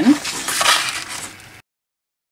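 Brief rustle and light clatter of craft materials being handled on a bench: a sheet of grid paper slid across the table and a small plastic glitter pot picked up. The sound fades, and a little past halfway the audio cuts to dead silence.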